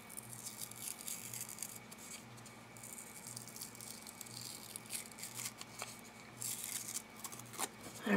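Faint crackling rustle of paper being peeled apart by hand, layers pulled off a collage piece to thin it, over a low steady hum.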